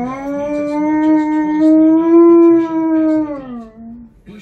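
Alaskan Malamute howling: one long, loud howl that glides up at the start, holds steady, and falls away in pitch near the end.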